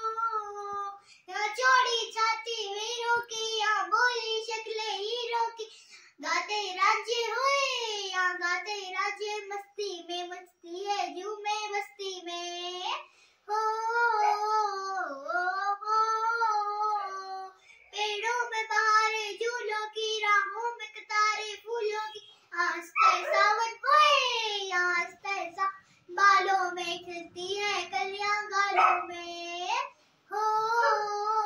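A young girl singing a song unaccompanied, in phrases of a few seconds separated by short breaths.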